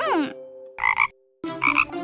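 Cartoon frog croaking: short croaks about a second in and again near the end, over soft background music. A quick falling pitch glide sounds at the very start.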